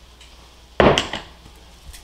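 A single sharp knock with a brief rattling tail about a second in, as a condiment bottle is set down or handled on a hard kitchen countertop.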